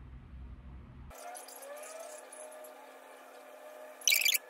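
Quiet room tone with faint hiss and hum; about a second in, the low rumble cuts out abruptly, as at an audio edit, leaving faint steady tones.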